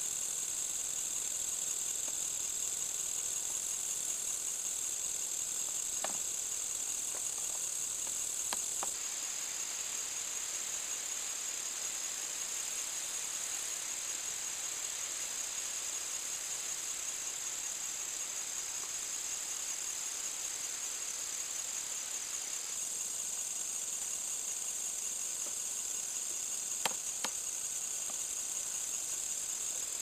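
Steady high-pitched chorus of crickets and other insects, a little weaker through the middle stretch, with a few faint clicks.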